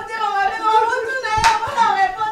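A person's drawn-out voice, held on long vowels, with one sharp hand clap about one and a half seconds in.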